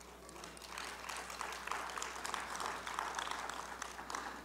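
Congregation applauding: many hands clapping, swelling over the first second and then holding steady.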